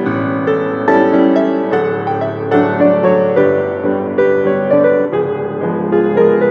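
Grand piano played solo, with notes struck about twice a second and left ringing over one another.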